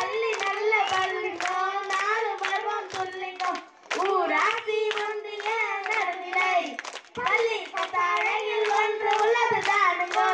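Children singing into microphones, their voices holding long notes, with hands clapping in a steady rhythm to keep time.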